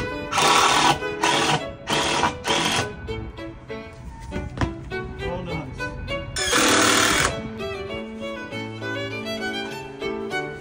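Power drill driving screws into the wooden frame: four short runs of the motor in quick succession, then one longer run a few seconds later. Violin background music plays underneath.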